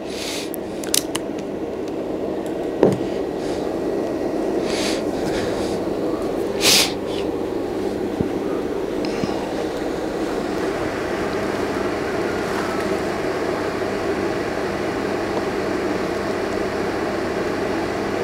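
Steady whirring fan and airflow noise of an electric fan heater running on its second heat stage, drawing about 1.9 kilowatts. A few brief clicks or rustles break in about three, five and seven seconds in.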